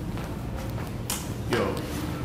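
A person laughing briefly, then a short voice, over a steady low hum of room tone.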